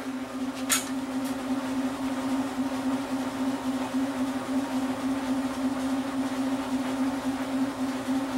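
Belt-driven wind-generator test rig running steadily at about 400 RPM: the Mann Smart Drive generator (a washing-machine-type stator in a trailer drum hub) and its drive motor give a steady hum with one strong pitched tone, under load while pumping power into the grid. A sharp click about a second in.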